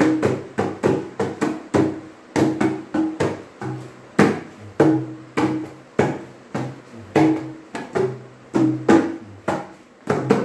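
Small double-headed barrel drum played with the hands, in a steady repeating rhythm of deep and higher-pitched ringing strokes, about two to three a second.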